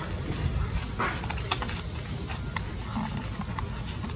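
Macaque giving a few short calls, about a second in and again near three seconds, over a steady low rumble with scattered clicks.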